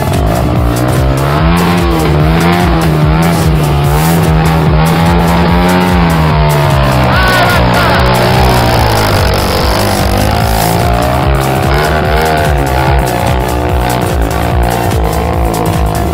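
Dirt bike engine revving up and down repeatedly over background music with a steady beat.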